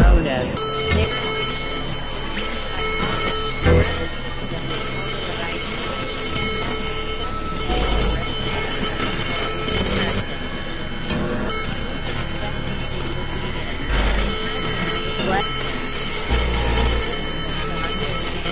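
Dense experimental electronic noise music: layered synthesizer drones with many steady high tones, broken by a few deep low pulses.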